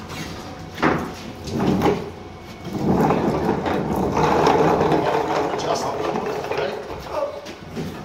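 Casters and dollies rolling and scraping across a concrete floor as heavy equipment and a plywood table on wheels are shoved into place. Two sharp knocks come in the first two seconds, then a longer stretch of rolling and scraping, with indistinct voices.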